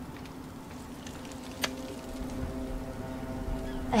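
Quiet background ambience from a TV drama's soundtrack: steady outdoor noise with a faint low held tone under it, and a single sharp click about one and a half seconds in. A voice begins right at the end.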